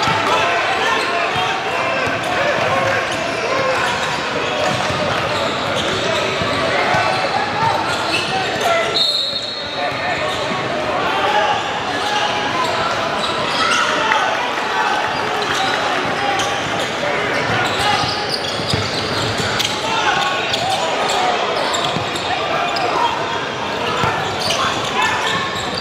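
Gymnasium sound during a basketball game: many voices from players and spectators echoing in the hall, with the thumps of a basketball bouncing on the hardwood court. A short high whistle blast sounds about nine seconds in.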